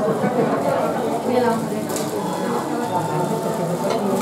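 Many children and adults talking at once, a busy babble of overlapping voices with no single clear speaker.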